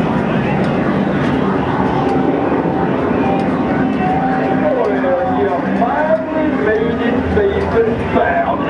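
Dark-ride soundtrack from the ride's speakers: character voices with sliding, swooping pitch, more of them in the second half, over a steady low hum.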